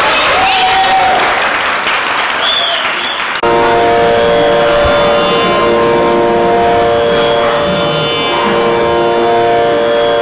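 Audience applause, cut off suddenly about three and a half seconds in by a steady drone of several held notes, a Carnatic-style accompaniment drone.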